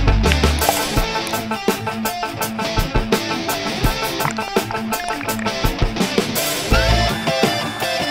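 Background music with guitar over a steady beat.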